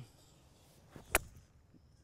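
Golf iron striking a ball off a divot board: one sharp click a little over a second in. A clean strike, hitting the right spot on the board.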